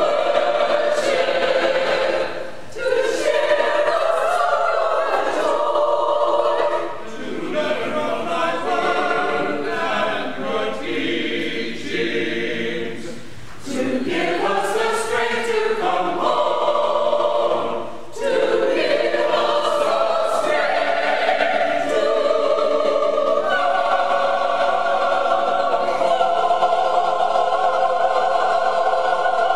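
Church choir of mixed men's and women's voices singing a worship anthem, in long phrases with brief pauses between them.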